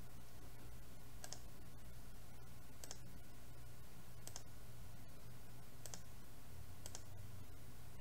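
Faint computer mouse clicks, about five spaced a second and a half or so apart, over a low steady hum of room tone.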